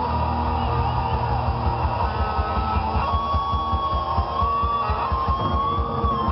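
Heavy metal band playing live through a PA: distorted electric guitars over a rapid bass-drum beat, with a lead guitar holding a bending, wavering note from about three seconds in.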